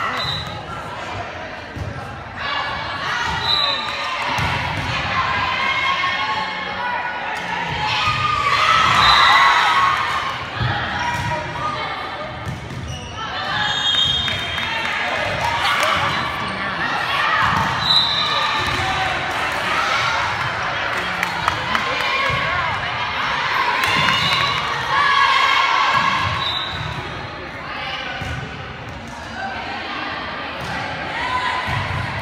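Volleyball game in a gym: the ball being hit and bouncing on the hardwood floor in repeated knocks, with players and spectators shouting on and off.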